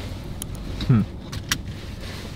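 Low steady rumble inside a parked car's cabin, with a few faint clicks and a brief falling hum from a man's voice about a second in.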